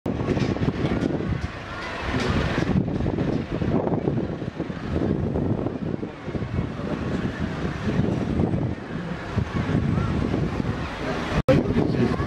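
Outdoor ambience dominated by wind rumbling on the microphone, with indistinct voices of people close by. The sound cuts out briefly near the end.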